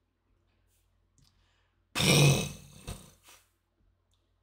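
A man's short, loud non-speech vocal sound about two seconds in, a low voiced exhalation that fades away over about a second, with a softer after-sound near the end.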